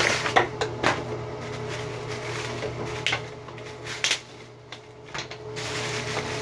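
Plastic wig packaging crinkling and rustling as it is opened and the wig is pulled out, with several sharp crackles in the first second and more about three and four seconds in.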